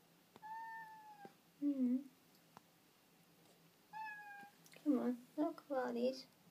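Domestic tabby cat meowing: two thin, high, slightly falling meows, one just after the start and one about four seconds in. Lower, louder murmured voice sounds come between them and through the last second or so.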